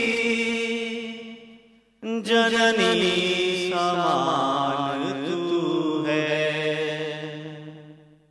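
A man chanting a melodic verse alone into a microphone, in long held notes. The first phrase fades to silence about two seconds in, then a new phrase begins, holds its notes, and dies away near the end.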